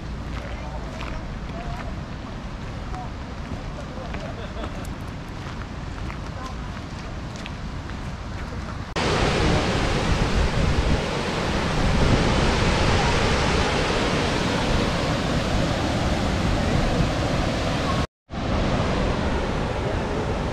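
Krka waterfalls: a loud, steady rush of falling water that begins abruptly about nine seconds in, after a quieter stretch of outdoor ambience. It cuts out for a moment near the end.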